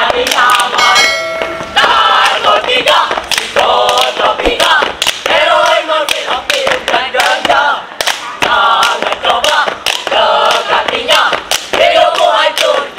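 A group of boys' voices chanting and singing a scout yell in unison, punctuated by sharp rhythmic hits in time with the chant. A brief steady tone sounds about a second in.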